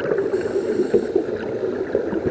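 Underwater sound of scuba regulators exhausting: a steady, dense bubbling and crackling of air bubbles, with a brief hiss about half a second in.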